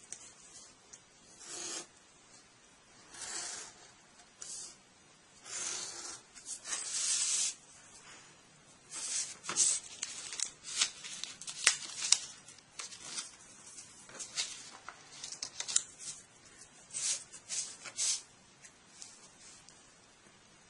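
Hobby knife blade drawn through cardstock along a steel ruler, making light scores and full cuts: a series of short scratchy strokes, with sharper clicks and scrapes coming thick and fast in the second half as the sheet is turned and the ruler repositioned.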